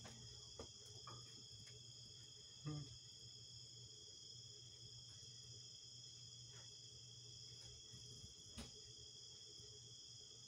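Faint, steady night chorus of crickets, with a few soft knocks, the clearest just under three seconds in.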